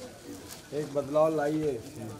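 A man's voice, a single short utterance of about a second near the middle, over quiet background chatter.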